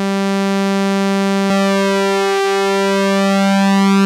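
A single held sawtooth synth note, pitched near 200 Hz and bright with harmonics, from the Softube Model 82 plug-in. About a second and a half in there is a click and the vintage Roland SH-101 joins on the same note; the two are not quite in tune, so the tone takes on a slow swirling phasing.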